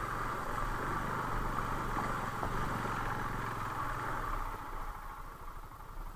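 Motorcycle engine running at low speed, with a steady wash of noise from the tyres moving through a flooded track; both fade about four and a half seconds in.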